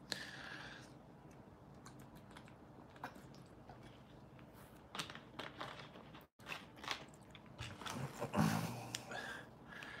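Quiet room with faint scattered clicks and short soft rustling noises, a louder cluster about eight and a half seconds in.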